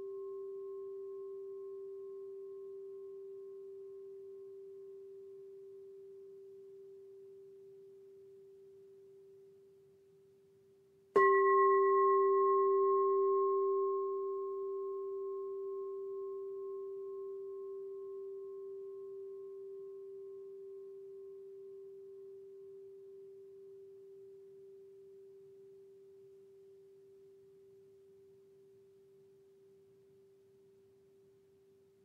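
A singing bowl's ring fading away, then the bowl struck once about a third of the way in. The new ring holds a steady low tone with higher overtones and dies away slowly.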